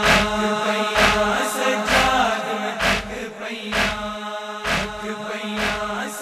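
Noha chanted by a male voice over a steady held drone, with open hands striking the chest in matam to an even beat, a little under one strike a second, seven strikes in all.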